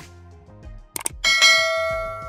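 Subscribe-button animation sound effect: a quick double mouse click, a second double click about a second later, then a bright bell ding that rings on and slowly fades, over background music.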